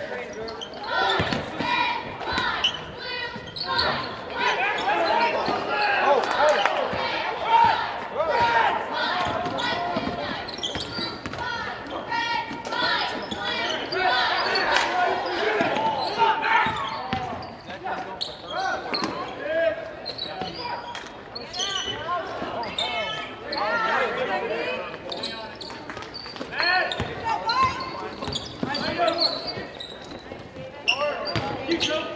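A basketball bouncing on a hardwood gym floor during play, with many sharp ball impacts, over a steady echoing babble of crowd and player voices in a large gymnasium.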